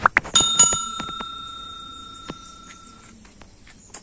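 Subscribe-button sound effect: a few quick clicks, then a bell struck twice in quick succession, ringing with several clear tones that die away over about three seconds.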